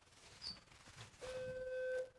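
A single steady electronic beep, one held tone about a second long that starts a little past halfway and cuts off sharply, over faint room noise.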